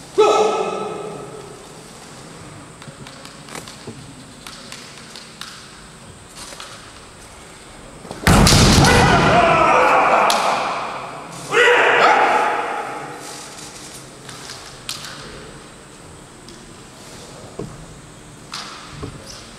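Kendo fighters' kiai shouts echoing in a large hall: one right at the start, a loud shout with a heavy stamp and bamboo shinai strike about eight seconds in, and another long shout a few seconds later. Light taps and clicks of shinai and feet on the wooden floor between.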